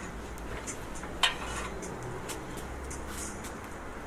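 Light metallic clinks and taps as a length of V-notched steel angle iron is handled in a workbench vise, with one sharper clink a little over a second in.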